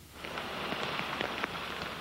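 Steady rain falling, with individual drops tapping, coming in about a quarter second in.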